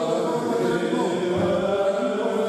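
Greek Orthodox Byzantine chant, sung by chanters in long held, slowly moving notes.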